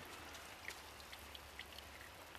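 Faint scattered drips and small pops from soapy water settling in a sluice box just after its pump has been unplugged.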